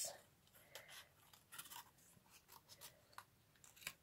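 Small scissors snipping through inked paper, a string of faint, short cuts at irregular intervals.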